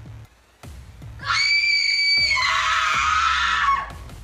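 A loud, very high-pitched scream that rises in suddenly, is held for about a second, then drops lower and holds before cutting off near the end, over a low music drone.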